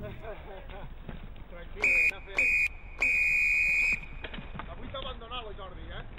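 A shrill, steady high tone sounding three times, two short blasts and then a longer one of about a second, over low rustle from the trail.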